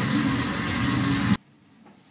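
Bathroom tap running steadily into a sink, turned off abruptly about one and a half seconds in.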